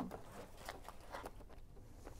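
Faint rustling and light handling noise of hands pressing glue-soaked cloth down onto a cardboard box, with a couple of small ticks about a second in.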